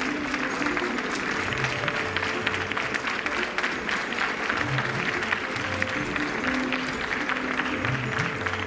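Audience applauding over background instrumental music with held notes and a bass line.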